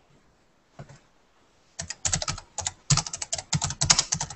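Typing on a computer keyboard: a quick, uneven run of keystrokes that starts about halfway through and keeps going.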